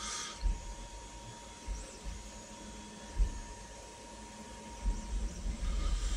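Quiet handling noise as a small resin model is turned over in the hands: soft low bumps, one a little sharper about three seconds in, with a faint steady high tone in the background that fades out about four seconds in.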